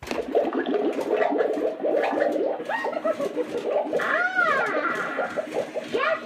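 Gemmy life-size animated cauldron witch prop starting up abruptly: its recorded witch voice and effects play through the built-in speaker, with warbling tones that rise and fall in pitch.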